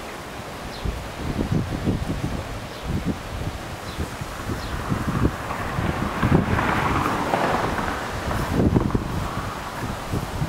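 Wind buffeting the microphone in uneven gusts, with rustling that swells about six to eight seconds in.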